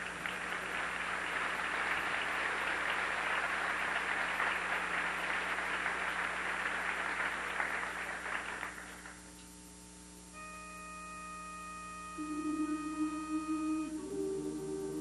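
Audience applause that fades out after about nine seconds. Then a single steady pitched note sounds, a pitch pipe giving the starting pitch, and about two seconds later the chorus hums the note low.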